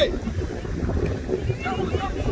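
Wind rumbling on the microphone, with a shout at the start and faint calls from players and spectators about a second and a half in.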